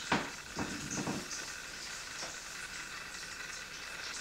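Soft brushing of hands sliding over clothing and skin, a few strokes in the first second or so and one faint one a little after two seconds, over a steady hiss.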